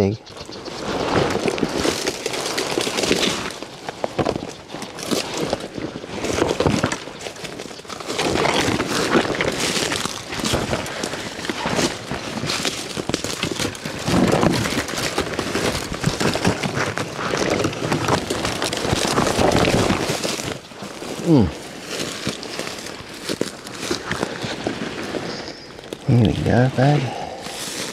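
Branches and dry leaves brushing, snapping and crackling against clothing and gear, with footsteps, as someone pushes through dense thorn bush; the sound comes in irregular bursts. One short sound that falls in pitch is heard about twenty-one seconds in.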